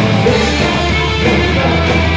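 A punk rock band playing loud and live, with electric guitar to the fore, heard from inside the crowd.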